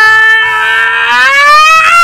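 A woman's long, loud scream of pretended pain, held on one pitch and then rising over the second half before cutting off sharply just after the end.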